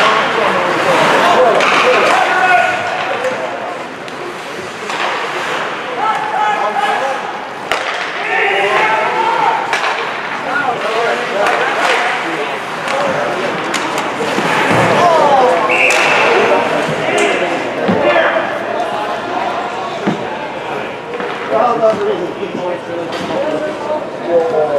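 Ice hockey game sound in an indoor rink: players' and spectators' voices calling out, with sharp clacks and bangs of sticks, puck and bodies against the boards and glass. A short high steady tone like a referee's whistle sounds about two-thirds of the way through.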